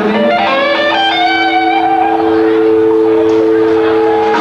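Electric guitar through an amplifier, holding a loud sustained chord while a line of higher notes steps upward over it, about a second in.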